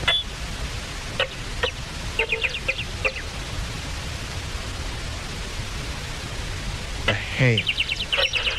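A steady hiss of static-like noise, with short clipped vocal fragments in the first few seconds and a voice coming back near the end.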